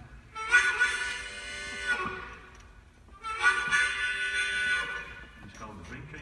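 Harmonica playing two long, loud chords, about a second and a half each with a short gap between: a freight-train whistle imitation.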